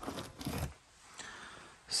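Faint rustling and scraping of old cardboard boxes and debris being handled while a piece of drill core is picked out. The noises come in short bursts in the first half, then fade to a faint hiss.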